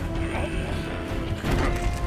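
Dramatic film score over a deep rumble, mixed with a grinding, ratchet-like sound effect and a sharp knock about one and a half seconds in.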